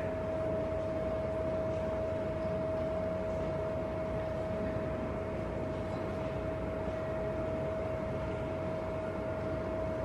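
Cooling fan of a 100 W LED spot moving-head light running with a steady hiss and a constant mid-pitched whine.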